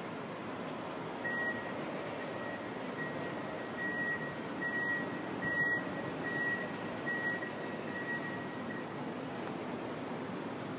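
A high electronic beep repeating a little faster than once a second, starting about a second in, growing louder to the middle and fading out near the end, over a steady background hiss of wind and city ambience.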